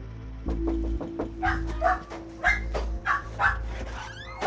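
Dogs barking several times, in short sharp barks that come louder from about a second and a half in, over quiet background music.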